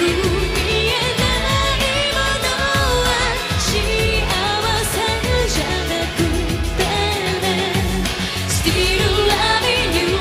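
A female vocalist singing a J-pop rock ballad with a live band: electric guitar, bass and drums. The sung melody carries over a steady drum beat.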